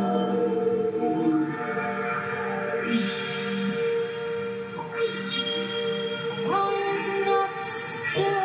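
Ambient electroacoustic music: held viola tones layered through delay and reverb, with filter sweeps that open up and brighten the sound about three and five seconds in, driven by the singer's arm movements through a MYO armband.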